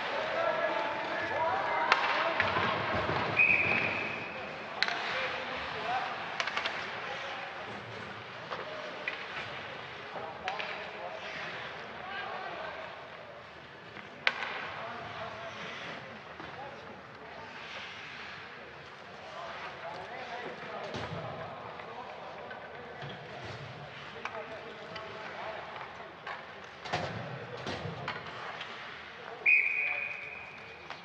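Ice hockey game sounds: sharp knocks of sticks and puck on ice and boards, skates, and players' voices calling out. A referee's whistle blows briefly about three seconds in, stopping play, and another short whistle sounds at the very end.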